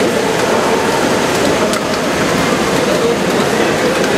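Heavy rain of large drops pouring down steadily on the street, a loud even hiss with the wet swish of city traffic mixed in.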